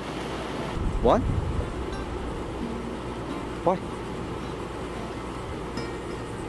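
Steady hiss of rain falling, with a brief low rumble about a second in.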